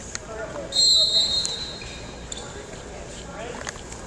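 A referee's whistle blown once about a second in: a single high, piercing blast lasting well under a second that fades away, the loudest sound here. Shouting and chatter from coaches and spectators carry on around it.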